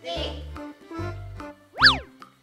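Bouncy children's background music with a steady beat, topped near the end by a cartoon 'boing' sound effect that sweeps sharply up in pitch and back down.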